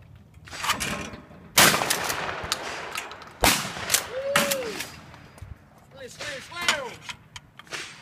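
Shotgun fired at a thrown clay target: a loud shot with a trailing echo about one and a half seconds in, and a second sharp shot about two seconds later.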